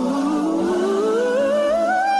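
A soul singer's voice holding one long note and sliding steadily upward in pitch, over the backing of a soul record.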